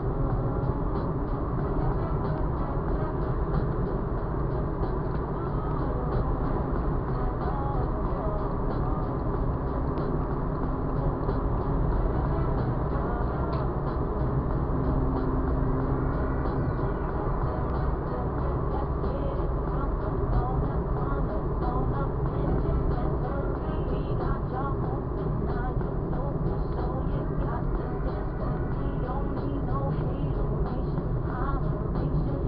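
Steady road and engine noise inside a car cabin at motorway speed, with a radio playing music and voices faintly underneath.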